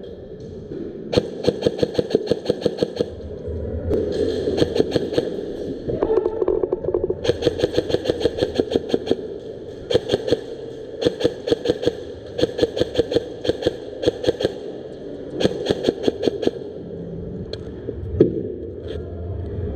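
Airsoft electric guns (AEGs) firing repeated full-auto bursts of rapid clicking shots, each burst about a second long with short pauses between, echoing in a large indoor hall.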